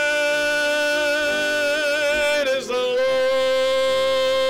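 Congregation singing a hymn, holding long notes. A brief break comes about two and a half seconds in, then a second held note slightly lower.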